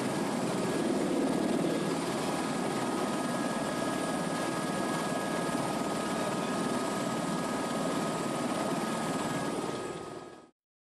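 Helicopter in flight heard from inside the cabin: a steady, dense noise of rotor and engine, with a couple of faint steady whines riding on it.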